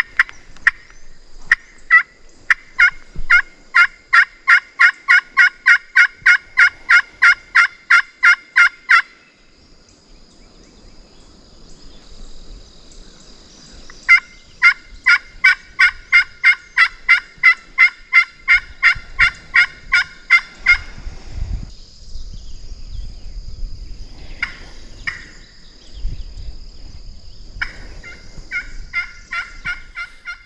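Wooden box turkey call worked by hand in long runs of yelps, about three sharp notes a second: one run of about eight seconds, a second of about seven after a pause, and a short run near the end.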